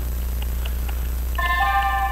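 A computer's alert sound: a chord of several steady tones that comes in about a second and a half in and holds.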